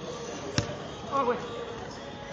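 A futsal ball kicked once, a single sharp thud about half a second in, followed by a brief call from a player.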